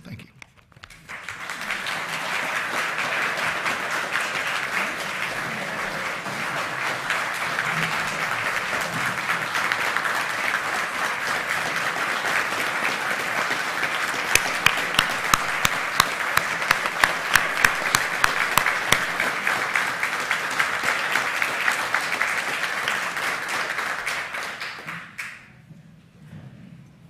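A congregation applauding steadily for nearly the whole stretch, dying away near the end. In the middle, for a few seconds, one person's claps close by stand out sharp and regular, about three a second.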